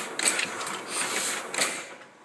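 Heidelberg windmill platen printing press running through a print cycle: a rattling mechanical clatter with two sharp clacks about 1.4 s apart, dying away near the end as the press comes to a stop.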